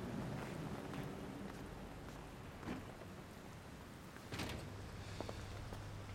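Faint wet-street ambience of light rain with footsteps and small knocks; a little over four seconds in comes a soft thud, and a low steady hum starts and carries on.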